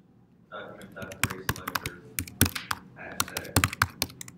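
Computer keyboard typing: a quick, irregular run of keystrokes starting about a second in, entering a line of code.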